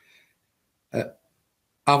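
Dead silence broken about a second in by one short, low vocal sound from a man, a brief grunt-like mouth or throat noise; he starts speaking again just before the end.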